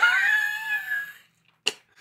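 A woman's high-pitched squeal, lasting about a second and fading away, followed by a short click near the end.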